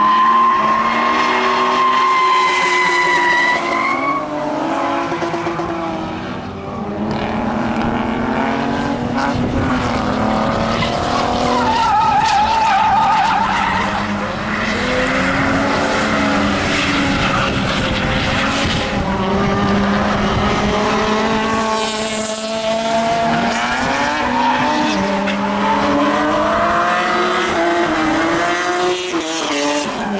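Rear-wheel-drive saloon cars drifting, among them a BMW E30 and a Mercedes 230E: engines revved hard, rising and falling again and again, while the tyres squeal as they slide through the corner. The squeal warbles about twelve seconds in.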